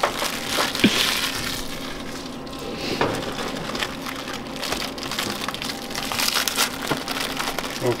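Crinkling and crackling of a plastic Oreo cookie-sleeve wrapper being opened and handled, with small clicks throughout as cookies are set out.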